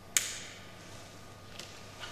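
A single sharp clink about a fifth of a second in, as metal communion vessels are handled at the altar, with a brief high ring-off. A faint tick follows near the end over quiet church room tone.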